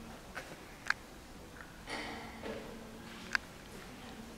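Quiet interior room tone with a faint steady hum that comes and goes, and two sharp clicks, one about a second in and one near the end.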